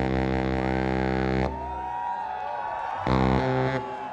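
Live baritone saxophone holding a long, loud low note that breaks off about one and a half seconds in. A quieter stretch follows with a higher held note and bending tones. Then short, punchy low notes start about three seconds in.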